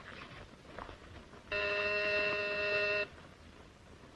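Doorbell buzzer sounding once, a steady ring of about a second and a half starting midway through: a visitor at the door.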